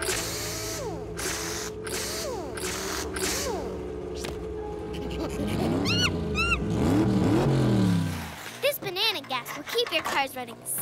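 Cartoon soundtrack: background music with steady held notes. Through its middle run several rising-and-falling swoops, like cartoon race-car engine effects, and short chirpy sounds come near the end.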